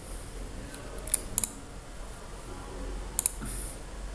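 Computer mouse clicks: two sharp clicks about a second in and a quick pair about three seconds in, over a faint low hum.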